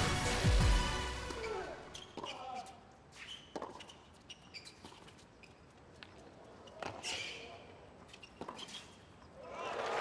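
The tail of a music sting fades out, then a few sharp knocks of a tennis ball off racket strings and the hard court, seconds apart, over faint crowd voices.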